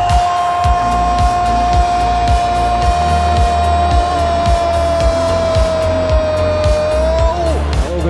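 A Brazilian football commentator's long drawn-out "Goool!" shout, one held note for about seven and a half seconds that sags slightly lower near the end, celebrating a goal. Background music with a steady beat runs underneath.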